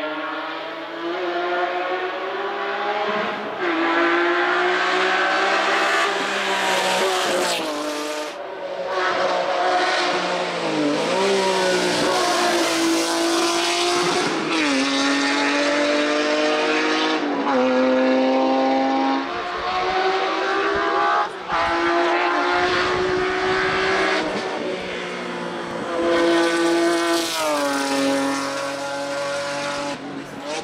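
BMW M3 GT race car's engine at full throttle, climbing in pitch and then dropping sharply, over and over, as it shifts up through the gears and lifts for corners.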